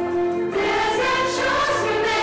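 A mixed teenage vocal group singing together into microphones, several voices holding notes at once, with higher voices moving up about half a second in.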